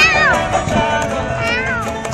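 Acoustic guitar and upright double bass playing in a street band, with two high, wavering notes that slide downward, one at the start and another about one and a half seconds in.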